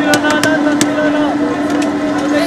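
Hands slapping and spreading a thin sheet of dough on a wooden table, a few sharp slaps in the first second, over street crowd chatter and a steady low hum.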